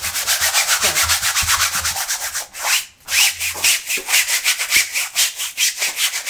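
A stiff paintbrush scrubbing paint across a board in rapid back-and-forth strokes, with a short break about three seconds in.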